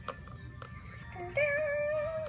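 A recorded song playing, with a singing voice holding one long, slightly wavering note from a little past halfway.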